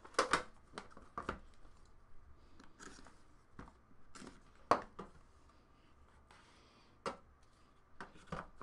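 Faint handling noises from unboxing trading cards: a folding knife slitting the seal on a small cardboard card box, among short scrapes and clicks of the box and its metal tin. The sharpest click comes a little under five seconds in.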